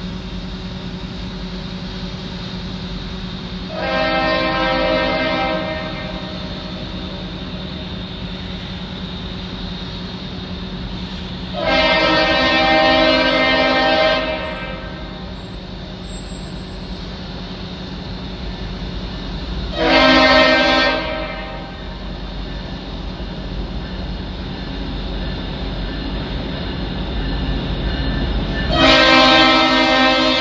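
Leslie RS5T five-chime locomotive horn sounding the grade-crossing signal: two long blasts, a short one, and a final long blast still sounding at the end. Beneath it is the low rumble of the approaching diesel locomotives, growing louder toward the end.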